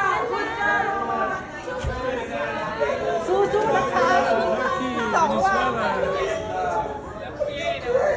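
Several people's voices chattering and calling out over one another, with a brief low thump about two seconds in.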